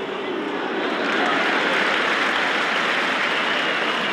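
Football stadium crowd noise, a dense wash of many voices that grows louder about a second in and stays up.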